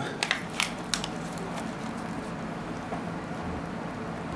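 A burger being picked up and handled by hand: a few light crackles in the first second or so, then only a steady hiss.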